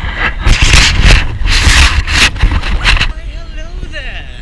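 Loud rubbing and scraping noise on a GoPro's microphone as the camera in its case is handled and moved, lasting about three seconds; then a voice.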